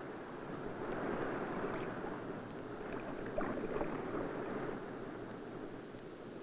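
Rushing, surging water with no distinct tones, swelling in the first second and easing slightly near the end.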